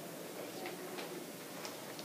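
Faint footsteps on a hard classroom floor, a few light, irregularly spaced clicks, as presenters change places at the front of the room.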